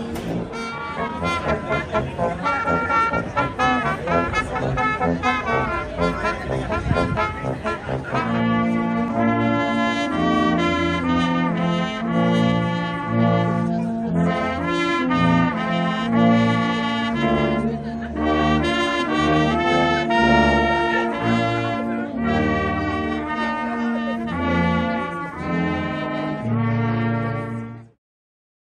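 Brass ensemble of trumpets and lower brass horns playing a slow carol in sustained chords over a moving bass line. For about the first eight seconds it is mixed with busy crowd noise. The music cuts off suddenly at the very end.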